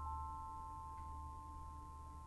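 Metallic mallet-percussion notes from a percussion ensemble ringing on as a sustained high chord of a few tones, slowly dying away, with one faint soft strike about a second in.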